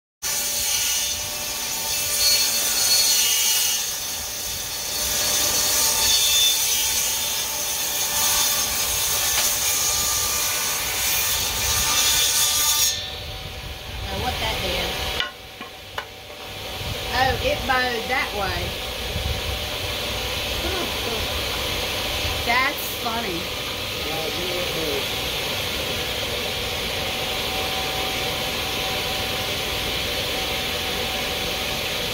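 Table saw cutting through a wooden board for about thirteen seconds, then the cut ends suddenly and the saw runs on steadily without a load.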